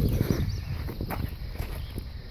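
Footsteps on gravel over a low background rumble of highway traffic.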